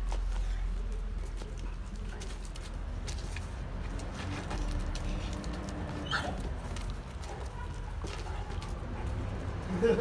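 Two Dogo Argentinos play-fighting, with growling and the scuffle of their paws on concrete.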